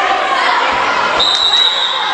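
A basketball being dribbled on a hardwood gym floor, with crowd voices around it. A little over a second in, a referee's whistle starts a long steady blast.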